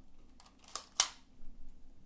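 Two sharp plastic clicks from a Nerf ZombieStrike Sidestrike dart blaster's mechanism, about a quarter of a second apart near the middle.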